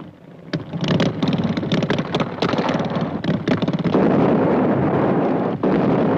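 Motorcycle engines running, a dense rough noise with rapid low pulses and clicks that grows louder about four seconds in, from an old film trailer's soundtrack.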